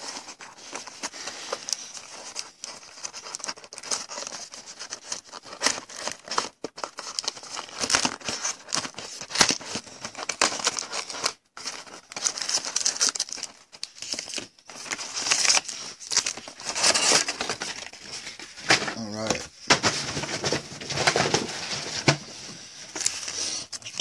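Hands handling a cardboard trading-card box and the gold foil card packs inside it: irregular rustling, crinkling and small clicks of packaging, louder in a few stretches.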